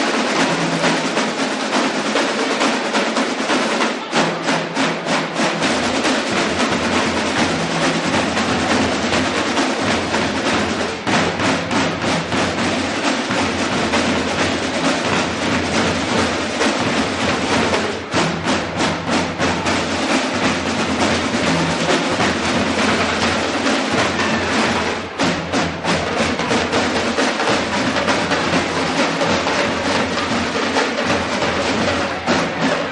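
School marching band: snare drums playing a loud, steady cadence, with pitched band instruments that hold and change notes. About every seven seconds the drums break into a cluster of sharp, rapid accented strokes.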